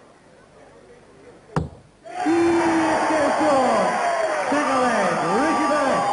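One dart thuds into the board about a second and a half in, landing the double that wins the leg. Half a second later a packed darts crowd breaks into loud cheering and chanting, many voices rising and falling in pitch.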